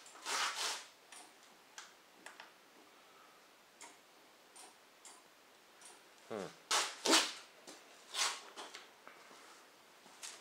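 A dog barking: one short bark right at the start, then a quick falling whine and a run of four or five short barks between about six and eight and a half seconds in.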